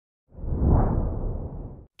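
A whoosh transition sound effect: a deep rushing swell that comes in about a third of a second in, fades gradually, and cuts off abruptly just before the next segment begins.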